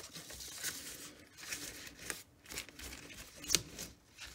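Quiet, irregular paper rustling and handling, with a few small faint ticks, as torn pieces of collage paper are handled for gluing.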